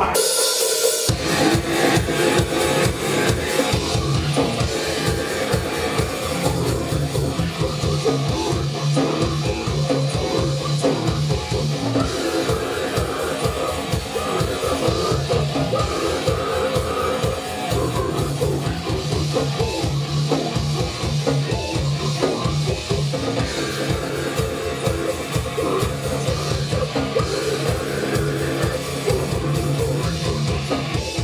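A goregrind band playing live on drum kit and electric guitar. The full band comes in about a second in with fast, dense drumming that keeps up throughout.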